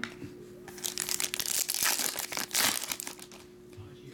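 Foil trading-card pack wrapper crinkling as it is opened and the cards are pulled out: a dense run of crackles lasting about two seconds, starting about a second in.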